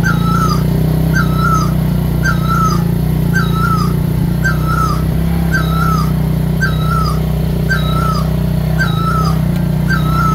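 A small engine running steadily at low revs, with a short high squeaky chirp repeating at an even pace, roughly once a second.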